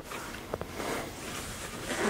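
Faint handling of a padded Cordura nylon case: a couple of small clicks about half a second in, then a light fabric rustle as the hands settle on the lid.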